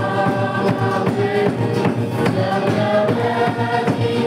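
A group singing a gospel worship song to acoustic guitar, with a steady drum beat.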